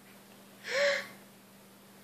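A single short, breathy gasp a little under a second in, with a brief voiced edge.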